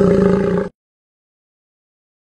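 The end of a children's song: one held low note that cuts off abruptly less than a second in, followed by digital silence.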